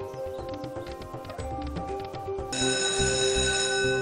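Online video slot game audio: White Rabbit's reels spinning and stopping, with clicks and short musical tones over steady game music. About two and a half seconds in, a bright sustained chime-like chord starts as the free-spins bonus triggers.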